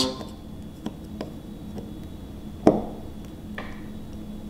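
Snap ring pliers working a snap ring onto a rocker arm trunnion: a handful of small, sharp metallic clicks spread out, the loudest about two-thirds of the way through, as the ring is worked into its groove.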